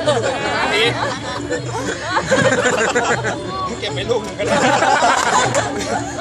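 A man talking in Thai over background music with a steady, repeating bass beat.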